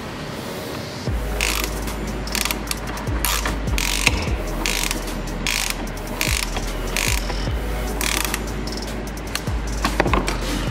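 Ratcheting combination spanner clicking in short runs as it turns the 19 mm nut of a front anti-roll bar (sway bar) link, with the link's stud held by a hex bit. A steady low hum runs underneath from about a second in.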